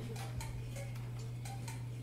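Soft, evenly spaced light percussive ticks, about three a second, each with a brief pitched ring, over a steady low hum, in a quiet stretch of free-improvised percussion.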